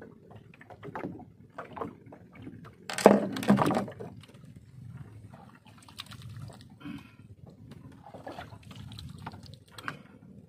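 Water sloshing against the hull of a small boat on the sea, with scattered knocks and ticks from fishing gear being handled, and a louder burst of knocking and splashing about three seconds in.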